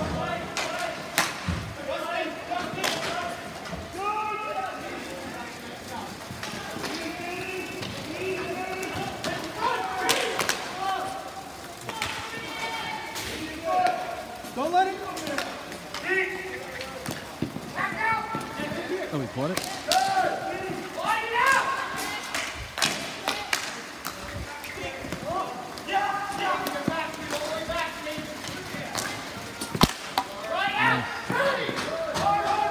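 Ball hockey play: voices calling out across the rink, mixed with repeated sharp knocks of sticks striking the plastic ball and thuds of the ball and players against the rink boards.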